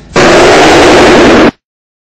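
A sudden, extremely loud, clipped burst of distorted noise lasting about a second and a half, cut off abruptly into dead silence. It is a deliberately overdriven editing effect.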